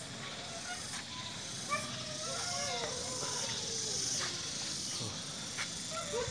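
Faint distant voices calling out, heard over a steady hiss that swells in the middle.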